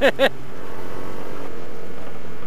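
A brief burst of laughter right at the start, then steady wind rush and a low, even hum from a Yamaha MT-07 motorcycle's parallel-twin engine while riding, picked up by a helmet-mounted microphone.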